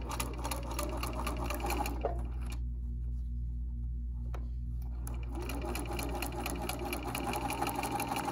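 Electric sewing machine stitching a seam through pieces of quilting fabric, a rapid run of needle strokes. The stitching stops for about three seconds in the middle, then starts again.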